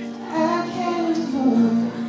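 A woman singing live over acoustic guitar: one sung phrase that ends on a held, wavering note near the end.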